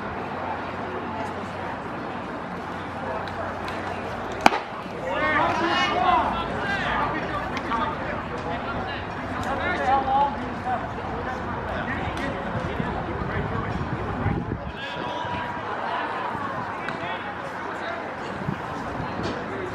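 A single sharp pop about four and a half seconds in, typical of a baseball pitch smacking into a catcher's leather mitt. Voices shout right after it, over steady player and spectator chatter.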